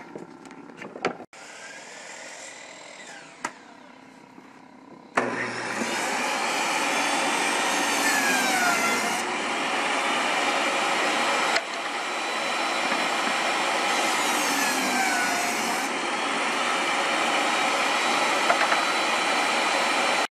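Portable jobsite table saw running loud and steady from about five seconds in, its pitch dipping twice as wood panel stock is fed through the blade; quieter machine noise before it starts.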